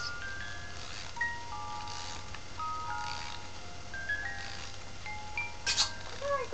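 A toy doll's electronic lullaby: a high-pitched tinkling melody of single held notes, one after another. A short burst of noise comes near the end.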